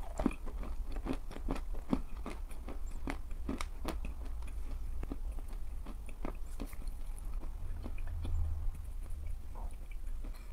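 Close-up chewing of pressed edible chalk: irregular soft crunches and wet mouth clicks, a few per second, as the chalk breaks up and turns to paste.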